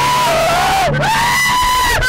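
Car passengers shrieking and whooping in long, high-pitched yells, one sliding down and back up about a second in, over a steady low hum.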